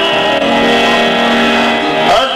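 A man singing one long held note over a sustained harmonium chord, steady in pitch, with the note giving way to a new phrase at the very end.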